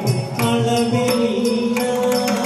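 Carnatic music accompaniment: male singing in long held notes over a steady pattern of mridangam strokes.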